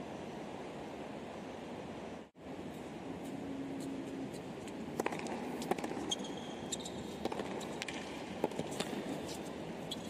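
Stadium crowd murmuring as a steady hubbub. After a brief cut, tennis ball impacts start about halfway through: sharp irregular hits of ball bounces and racket strokes on a hard court.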